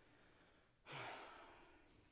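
A person's sigh: one long breathy exhale that starts just under a second in and fades away over about a second.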